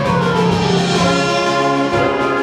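Middle school symphonic band of brass and woodwinds playing sustained full chords, with one line falling in pitch over the first second.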